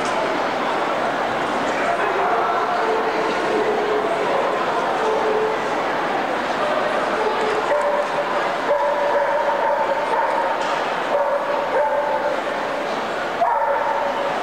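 Dogs barking and whining over the steady murmur of a large indoor crowd, with drawn-out whines from about halfway through.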